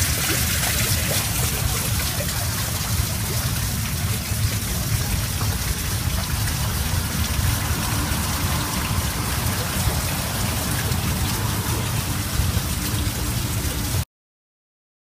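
Steady rushing noise like running water or rain, over a fluttering low rumble.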